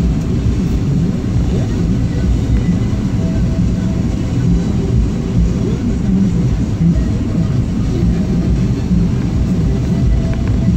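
Steady low rumble of a car's engine and tyres on the road, heard from inside the cabin.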